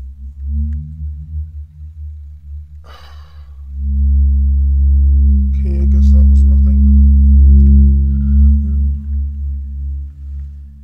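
A deep, steady, ominous drone sound effect that swells much louder about four seconds in. A few brief crackling bursts sit over it.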